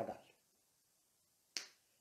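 Near silence, broken by a single short sharp click about one and a half seconds in.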